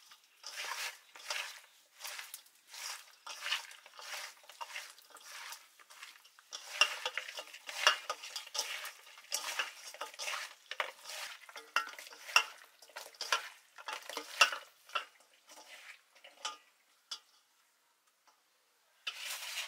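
Small whole fish being mixed by hand with spices in a stainless steel bowl: wet squelching and rustling of the fish against the metal in repeated strokes, about two a second, busiest through the middle.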